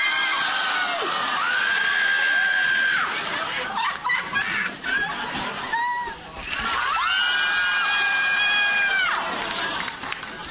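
A woman screaming as gravy is poured over her head: two long, high, held screams, the first just after the start and the second about seven seconds in, with shorter shrieks between. A studio audience cheers and shouts underneath.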